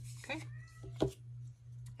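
A single sharp knock about halfway through as a small wooden dollhouse kit piece is set down on the work surface, with a faint high, thin sound a moment before it.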